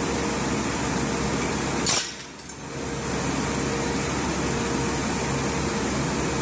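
Large glass sheets breaking with one sharp crash about two seconds in, over steady workshop machinery noise with a constant hum.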